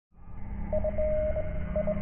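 Electronic telephone-like tones: a mid-pitched beep that sounds on and off, held once for a few tenths of a second, over a steady low hum, all thin and narrow as if through a phone line.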